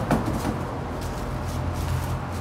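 A heavy cardboard carton of vacuum-packed picanha being dragged across a wooden table, with a short knock just after the start, over a steady low hum.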